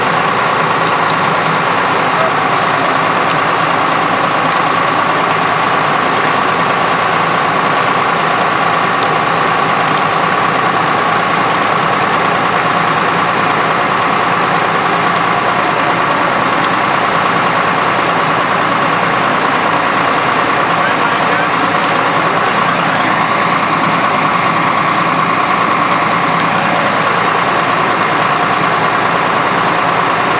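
Fire engine running steadily, with an unchanging high whine over the engine noise.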